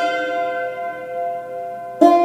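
Yanggeum, the Korean hammered dulcimer with metal strings, with a chord of several notes ringing on and slowly fading. A fresh loud stroke comes right at the end.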